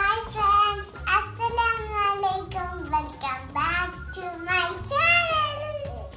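A young girl singing in a high, gliding sing-song voice over background music with a steady low beat.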